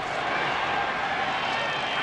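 Noise of a large stadium crowd, steady and even, with no single sound standing out.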